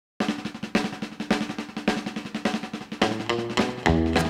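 Snare drum playing a steady, even beat in a country band intro, with a loud stroke about every half second and quieter strokes between. About three seconds in, bass and guitar notes come in over the drum.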